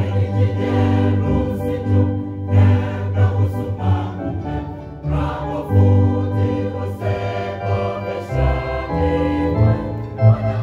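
A church choir of men's and women's voices singing a gospel song together in harmony, over instrumental accompaniment with sustained bass notes.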